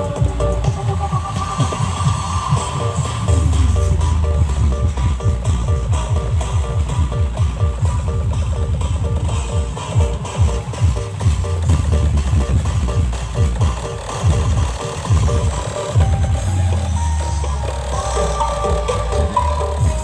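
Dance music with a heavy, pulsing bass beat and a repeating melody, played loud through a truck-mounted stacked loudspeaker sound system (Punel Audio).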